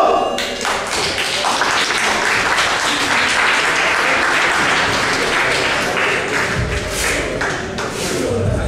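Audience applauding, dense steady clapping.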